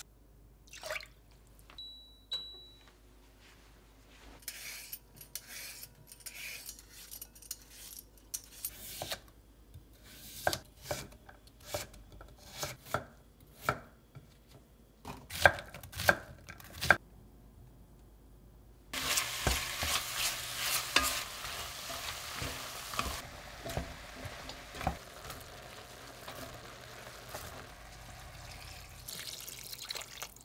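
Cooking in a cast-iron pot on an electric cooktop: a short electronic beep from the cooktop's touch controls, scattered knocks and clinks of lid, bottle and utensils, then from about two-thirds in a sudden steady sizzle as ingredients go into hot oil. The sizzle eases after a few seconds and goes on more quietly under the clacks of stirring.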